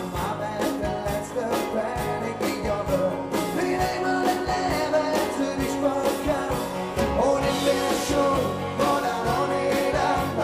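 Live rock band playing with a steady drum beat, electric guitar and bass under a male lead vocal.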